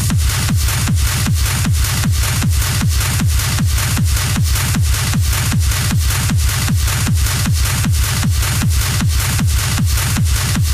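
Hard techno DJ mix: a fast, steady kick drum comes back in right at the start after a short break, each kick a low thud falling in pitch, under a hissing upper layer.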